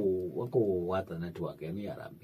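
A man speaking in a low voice, with drawn-out syllables that rise and fall.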